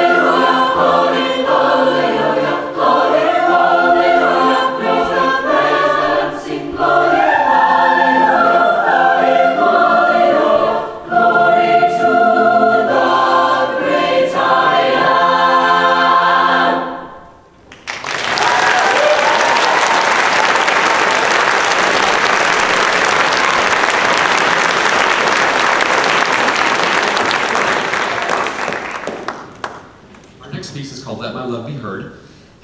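A mixed high school choir sings in parts, the song ending about seventeen seconds in. Audience applause follows and tails off near the end.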